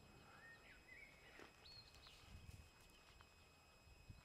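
Near silence: faint outdoor ambience with a few faint, short bird chirps scattered through it.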